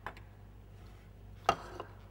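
Kitchen utensils knocking as flour is measured into a metal sieve over a glass bowl. There is a faint tap at the start, then a sharp clack about a second and a half in with a brief ring, and a lighter tap just after.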